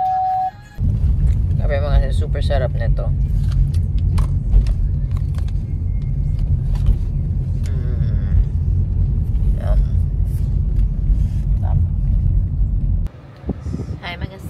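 A loud, steady low rumble inside a car's cabin, starting abruptly just after a short beep and cutting off near the end. A woman's voice murmurs briefly about two seconds in, and faint scattered clicks sit on top.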